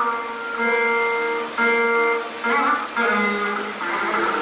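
Saraswati veena playing a slow Carnatic melody in Surati raga: single plucked notes every second or so, each ringing on, some of them sliding and wavering in pitch.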